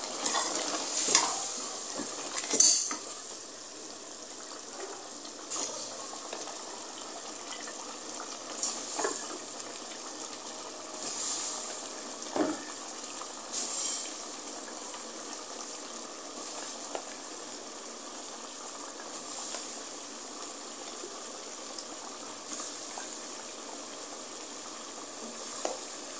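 Curry sizzling steadily in a pressure cooker on a gas flame as slices of tinda (round gourd) are dropped in and turned with a wooden spoon. Brief louder surges of sizzling come every few seconds, with a few sharp knocks against the pot.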